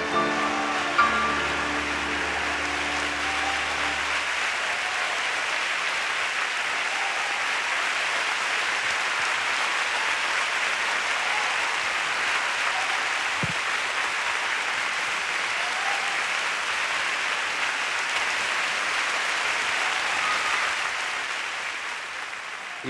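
Studio audience applauding steadily for about twenty seconds, tapering off near the end. A closing held chord of the accompanying music sounds under the first few seconds and fades out about four seconds in.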